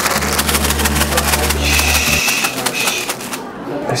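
A paper bag of McDonald's Shake Shake fries being shaken hard to coat them in cheese powder: a fast, continuous rustling rattle of paper and fries that stops about three seconds in.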